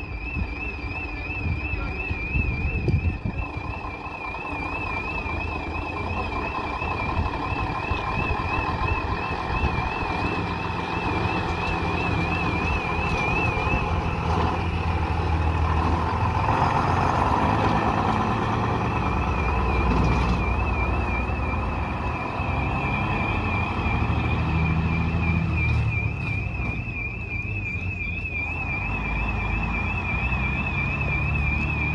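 Vintage half-cab double-decker bus engine running as the bus pulls away and drives past, loudest about halfway through. A high warbling alarm-like tone sounds throughout.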